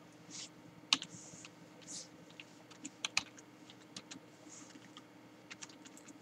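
Typing on a computer keyboard: scattered, irregular key clicks at a low level, the sharpest about a second in.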